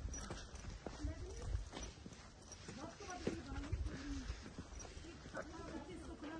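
Indistinct voices talking while walking, with footsteps on a paved road and wind or handling rumble on the microphone.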